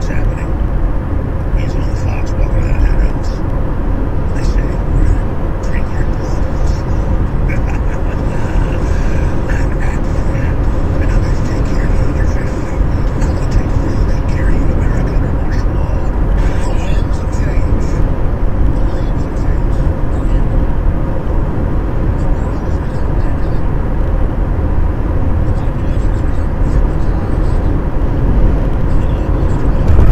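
Steady road and tyre noise inside a car cabin at highway speed, a low rumble picked up by a windshield dashcam, with indistinct voices heard over it on and off.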